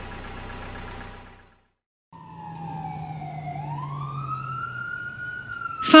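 A car engine running steadily, fading out about a second and a half in. After a brief silence, a fire truck siren wails over a low engine rumble. It dips slightly, then rises slowly and holds high.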